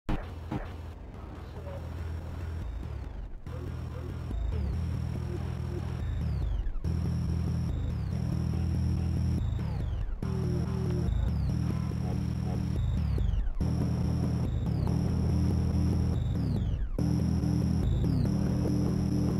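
Electronic dance-style music: heavy sustained bass chords that drop out briefly about every three and a half seconds, each gap marked by a falling sweep, the track growing louder over the first few seconds.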